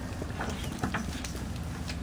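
A few faint light metallic clicks as a threaded pipe fitting is turned into a port on a homemade vertical steam boiler, over a steady low rumble.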